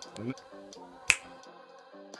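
A single sharp finger snap about a second in, over background music.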